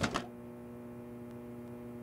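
Steady low electrical hum, with a brief handling noise at the very start.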